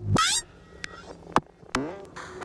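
Experimental electronic music: a short, loud pitched burst that sweeps upward just after the start, then sparse sharp clicks and a second rising sweep near the end, over a faint steady low drone.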